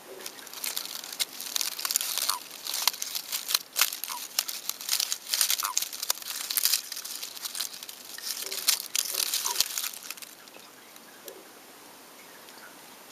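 Dense, irregular crackling and rustling that stops about ten seconds in.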